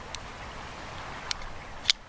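Small metallic clicks of a cartridge conversion cylinder being worked into a Remington New Model Army revolver's frame past the hand: two light clicks, then a sharper, louder one near the end, over a steady hiss.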